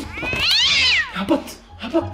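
A cat meowing once: a single drawn-out meow about a second long that rises and then falls in pitch.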